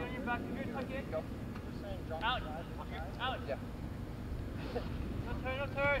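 Players shouting across a soccer field in short calls every second or so, heard at a distance over a steady rumble of wind on the microphone.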